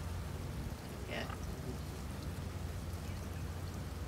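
Steady rain falling, an even hiss with a low rumble under it.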